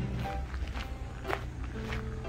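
Footsteps crunching on gravel, a step about every half second, over light background music with short plucked-sounding notes.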